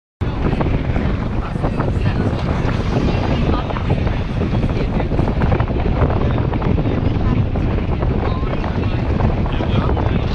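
Wind buffeting the microphone, a loud steady rumble heaviest in the lows, with indistinct voices underneath.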